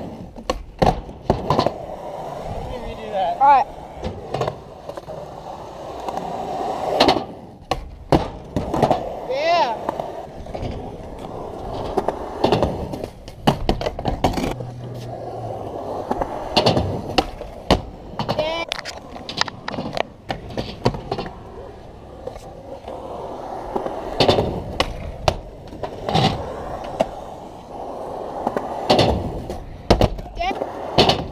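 Skateboard wheels rolling over concrete and skatepark ramps, with repeated sharp clacks of the board popping and landing.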